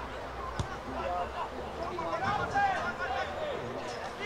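Scattered voices of players and spectators calling out across an open sports ground, with one short thud about half a second in.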